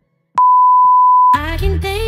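Workout interval timer giving one long, steady beep of about a second, the signal that the work interval is over and the rest begins. Music with singing comes in as the beep stops.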